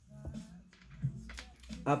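Tarot cards shuffled and squared by hand: a few light, scattered card clicks and taps, over faint background music.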